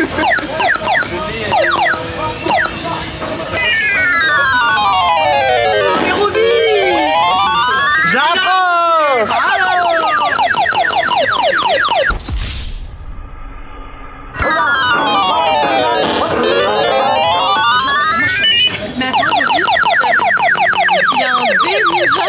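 Electronic sound effects and jingle from an arcade claw machine, called a horrible noise: quick falling and rising pitch sweeps, repeated over and over. The sound drops away briefly about twelve seconds in, then the same sweeps return.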